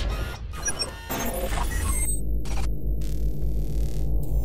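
Electronic logo-intro sound effects: a deep, steady bass drone under glitchy digital clicks and short bleeps for the first two seconds, then a steadier hum with a whoosh about three seconds in.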